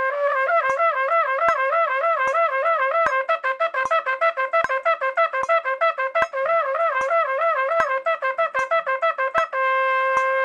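Trumpet playing a fast slurred flexibility drill, rocking quickly between two neighbouring notes in repeated five-note groups, then settling onto one long held note about half a second before the end. A metronome clicks steadily underneath, about every 0.8 seconds.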